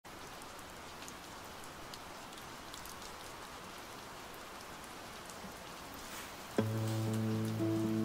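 Soft, steady rain with faint scattered drop ticks. About six and a half seconds in, a nylon-string classical guitar with a capo sounds a strummed chord that rings on as the playing begins, louder than the rain.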